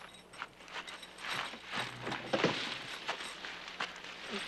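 People scrambling about inside a car and climbing out: irregular shuffling, bumps and rustling, with a short vocal grunt about two and a half seconds in.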